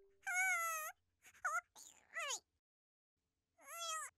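High-pitched, wordless cartoon-character vocalizations, whimpering and squeaky. A wavering call comes near the start, then a few short squeaks around the middle and a falling squeal near the end, with silent gaps between them.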